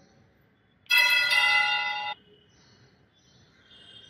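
Altar bells rung at the elevation of the chalice during the consecration: one bright, many-toned peal lasting just over a second, starting about a second in and cut off suddenly.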